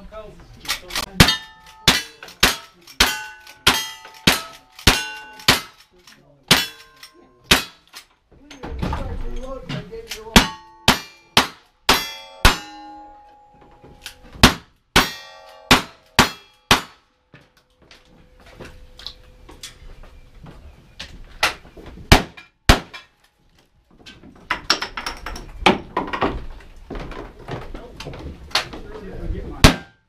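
A timed cowboy action shooting stage: a rapid string of gunshots, mostly half a second to a second apart, each followed by the ring of a steel target being hit. The firing pauses briefly around the ninth second, then runs on fast before thinning to scattered shots in the second half.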